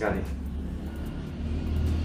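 A low, steady rumble that grows louder towards the end.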